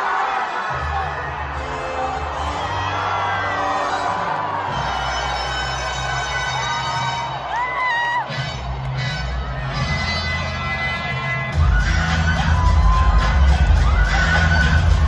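Loud music with a heavy bass over a large stadium crowd cheering and singing along. The bass gets louder near the end.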